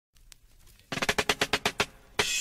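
Drum fill opening a reggae song: a quick, even run of drum strokes, about a dozen in a second, starting about a second in.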